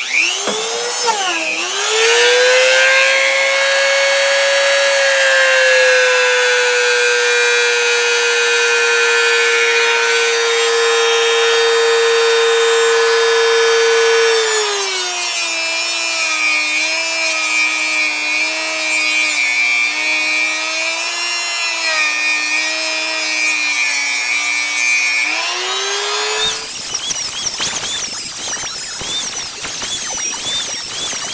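Small electric rotary tool with a buffing wheel, whining steadily as it polishes a steel sewing-machine bobbin case with white compound. About halfway through the pitch drops and wavers while the wheel is held against the part. Near the end the sound becomes a fast jumble of squealing chirps, played back sped up ninefold.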